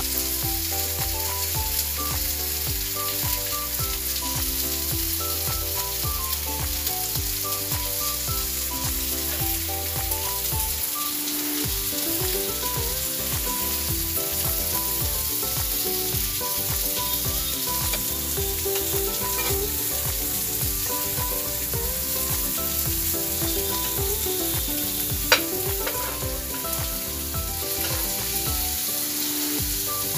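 Chicken rolls sizzling steadily in hot oil on a flat frying pan, with one sharp tap late on. A background tune of held notes plays over the frying.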